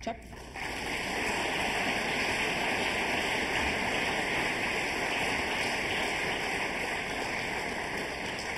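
Audience applauding: a dense, steady clapping that starts about half a second in and eases slightly near the end.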